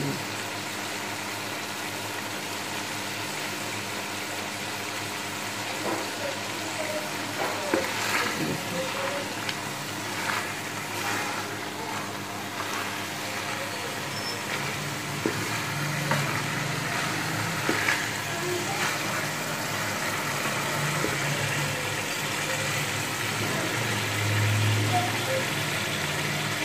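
Cubed potatoes and minced beef frying in a metal pot, sizzling steadily while the potatoes are browned in the oil. A wooden spatula scrapes and stirs the pan now and then, most often in the first half.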